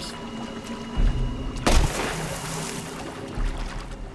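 A single gunshot about one and a half seconds in, a warning shot fired to scare off a young grizzly bear, with a short ringing tail after the crack.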